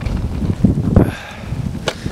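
Wind buffeting the microphone of a handheld camera as it is carried along, an uneven low rumble with handling noise and a short sharp click near the end.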